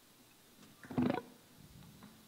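A single short vocal sound from a woman, muffled by her hand over her mouth, about a second in, against quiet room tone.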